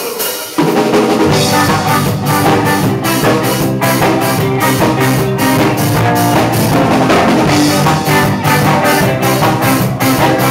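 Live ska-rock band with two electric guitars, bass and drum kit starting a song. The full band comes in sharply about half a second in, and the drums keep an even beat of about two strokes a second.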